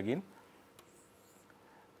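A man's voice finishing a word at the very start, then near silence with a faint scratch of a stylus drawing on a pen tablet.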